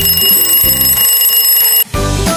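Alarm clock ringing, a loud high continuous ring of nearly two seconds that cuts off suddenly: the time's-up signal for a timed quiz question.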